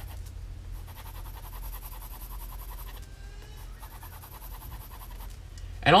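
Graphite pencil shading on sketchbook paper: light, rapid back-and-forth strokes, with a steady low hum underneath.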